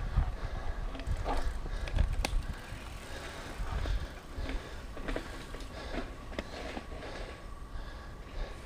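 Mountain bike rolling down a dirt trail: a tyre and trail rumble with scattered clicks and knocks from the bike, heavier in the first half.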